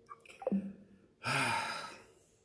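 A man's short falling vocal sound, then a long, breathy audible sigh lasting most of a second.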